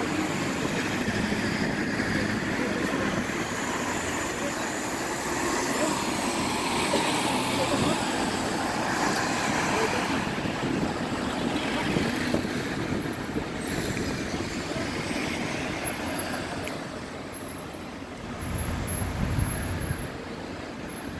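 City street traffic: buses and cars running and passing, with a steady engine and road noise that eases briefly near the end and then picks up again.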